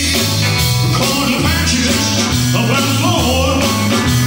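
Live rock and roll band playing: electric guitar, bass and drums, with a male singer on a microphone.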